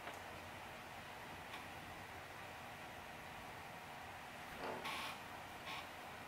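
Quiet room tone with a steady faint hiss, and one faint, brief noise about five seconds in.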